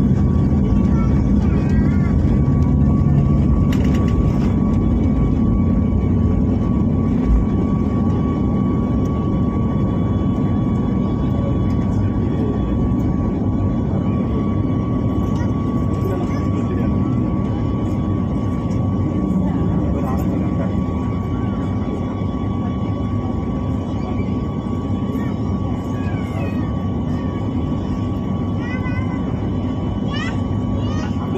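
Airliner jet engines heard from inside the cabin during take-off and initial climb: a loud, steady rumble with a steady high whine, easing slightly as the climb goes on.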